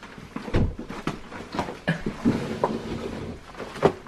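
Front door being worked open against snow packed up outside it: several sharp clicks and knocks from the door, with a low rustling noise between them.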